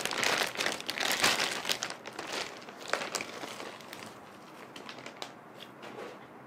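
Plastic wrapping crinkling and rustling as a handbag is pulled out of it. The crinkling is busy for about the first three seconds, then thins to a few faint rustles.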